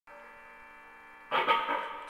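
Steady electrical mains hum with many overtones. About a second and a half in, a sudden much louder noisy sound comes in over it.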